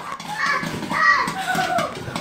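Young children's voices, excited chatter and exclamations.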